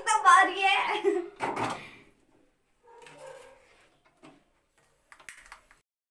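A voice speaking briefly, then near the end a few sharp clicks from a hand-held spark gas lighter pressed at a gas stove burner.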